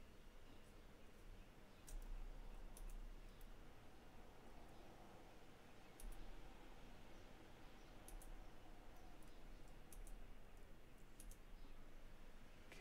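About a dozen faint, sharp clicks from working a computer's mouse and keys, coming at irregular intervals and sometimes in quick pairs, over near-silent room tone.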